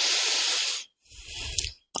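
A man's breathing close to the microphone during a pause in speech: a louder breath of just under a second, then a softer, higher breath about a second in, just before he speaks again.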